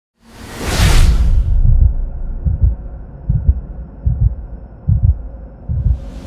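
Horror-intro sound effects: a whoosh sweeps in during the first second and a half, then low heartbeat-like double thumps repeat about every 0.8 s, with another whoosh starting right at the end.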